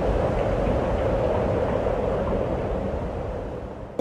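A rushing, rumbling whoosh sound effect that holds steady and eases off near the end.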